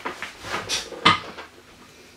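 Handling noise close to the microphone: a few light knocks and rustles, the loudest about a second in.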